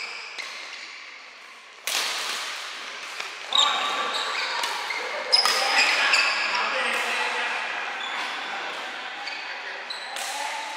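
A badminton rally: sharp racket strikes on the shuttlecock, three of them about two seconds apart, with short high squeaks of shoes on the court between them.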